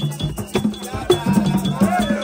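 A Vodou drum ensemble: hand drums beaten in a steady, fast rhythm, with a metal bell struck by a stick ringing over them, and voices singing toward the end.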